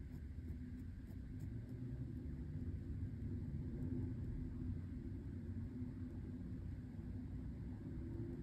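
Faint low rumble with a steady low hum, swelling slightly over the first few seconds and then holding level.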